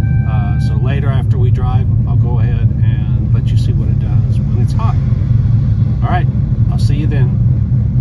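Modified LS7 427 (7.0-litre) V8 of a C6 Corvette idling steadily just after a cold start, heard from inside the cabin: it started right up as it should when cold.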